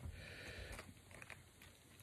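Near silence with faint soft handling ticks and rustles, mostly in the first second: a lure being worked out of its plastic packaging.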